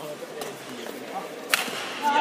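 Badminton racket striking a shuttlecock: one sharp crack about one and a half seconds in, after a much fainter hit about half a second in, over background voices in the hall.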